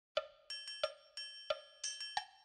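Musical intro of single pitched percussive notes, about three strikes a second, alternating a lower note with a brighter, ringing higher one.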